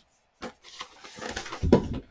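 An LP record jacket being picked up and handled: a click about half a second in, then cardboard rustling that ends in a heavy knock.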